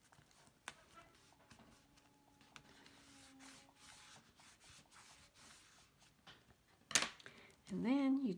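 Faint rubbing and rustling of a bone folder burnishing clear tape down onto black cardstock, with small paper-handling clicks, then one sharp tap near the end.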